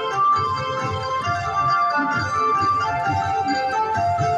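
5 Dragons Rapid slot machine playing its free-games bonus music: an electronic, keyboard-like melody of held notes that change pitch every second or so as the reels spin.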